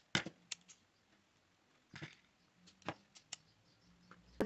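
Small scissors snipping thin polypropylene cord: a few faint, sharp snips and clicks, most in the first second, with a few more later.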